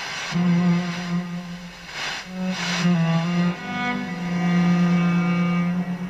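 Classical music with long held bowed-string notes playing through the Tandberg TP41 portable radio's speaker. Two short rushes of hiss come about two seconds in, while the telescopic aerial is handled and the reception shifts.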